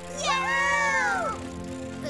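A young cartoon girl's voice giving one drawn-out wordless cry, about a second long, rising at the start and then sliding down, over steady background music.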